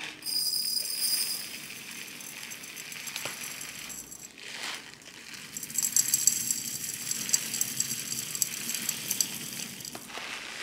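Dry grains poured from a plastic bag into a glass jar: a short pour of fine grain hisses in just after the start. About halfway through, a longer pour of mixed grains and beans begins, a dense pattering of small kernels ticking against the glass that runs on to the end.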